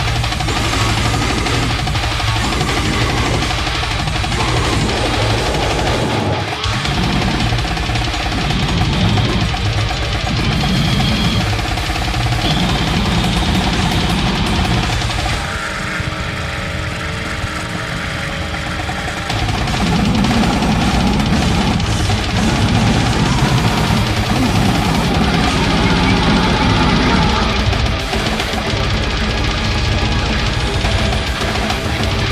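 Loud, dense brutal death metal / goregrind track. In the middle there is a stretch of a few seconds of sustained, held notes before the full band texture returns.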